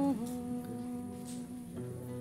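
A woman humming one long held note over soft kora plucking, her voice sliding down into it at the start. A new note comes in near the end.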